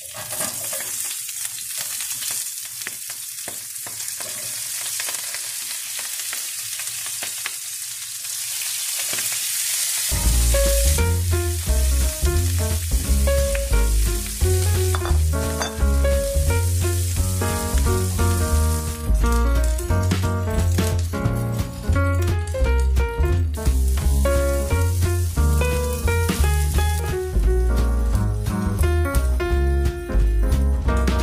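Halved Brussels sprouts sizzling in hot olive oil and bacon fat in a frying pan. About ten seconds in, background music with a steady bass comes in over the sizzle.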